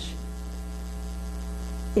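Steady low electrical mains hum with a ladder of even overtones, heard on its own in a gap between spoken words.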